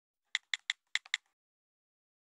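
A short run of keyboard-typing clicks, about six quick taps in under a second, used as a sound effect as the title text appears.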